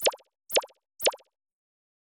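Three short pop sound effects about half a second apart, one as each '我+1' mark is stamped onto an animated end-card graphic.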